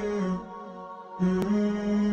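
Intro music: a chanted vocal line in long held notes. It fades out about half a second in and comes back just past the middle with a small click.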